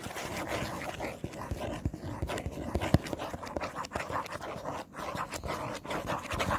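Fingers scratching and tapping on a Funko Pop box held close to the microphone: a dense, irregular run of small scratches and taps.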